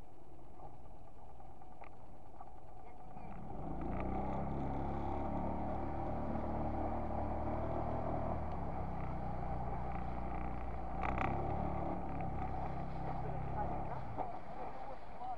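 Small outboard motor on a skiff opening up about three and a half seconds in, then running steadily at speed with water rushing past the hull.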